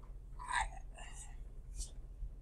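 Faint, soft speech close to a whisper, in two short snatches with a brief hiss near the end, over a steady low electrical hum.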